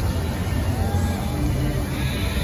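Bellagio fountain water jets shooting up and spraying in a steady rushing noise with a heavy low rumble. The show's music plays faintly beneath it over loudspeakers.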